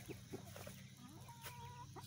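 Faint chicken sounds, with one soft, drawn-out note about a second long in the middle.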